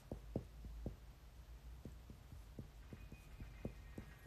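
Faint, soft thuds and taps at irregular intervals, a few a second, over a low steady hum: handling noise of the phone that is doing the recording.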